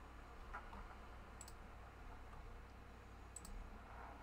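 Near silence with a low steady room hum, broken by two brief sharp clicks about two seconds apart.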